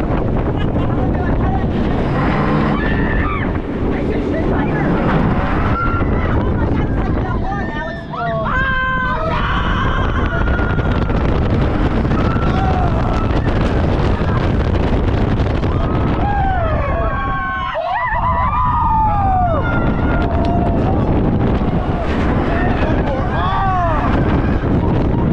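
Steel launched roller coaster train running at speed, with wind rushing over the on-board microphone and steady track noise. Riders scream several times: around a third of the way in, again about three-quarters of the way in, and near the end.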